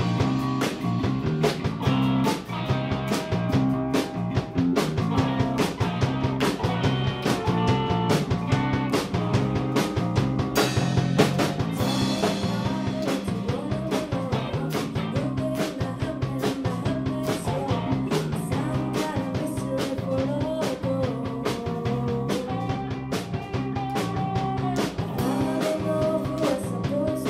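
A live rock band of drum kit, bass and electric guitar plays a song at a steady tempo, the drums keeping a regular beat under a repeating bass line. About halfway through, a wavering melody line rises over the band.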